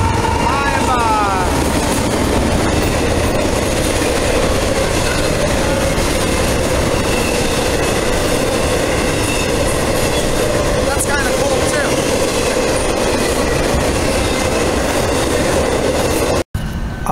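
A freight train passing close by at speed: a diesel locomotive, then a long string of container cars. The wheels on the rails make a loud, steady rolling rush with clickety-clack.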